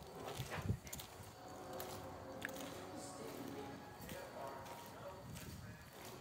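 Faint footsteps with a few light knocks on outdoor paving tiles that are loose and still move underfoot.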